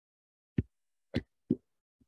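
Three short, dull thumps about half a second apart, like knocks or bumps against a microphone or table.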